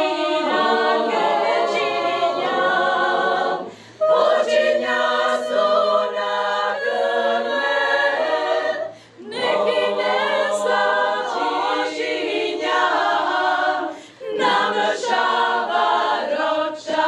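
Women's choir singing a cappella, in sustained phrases of about five seconds broken by short pauses for breath.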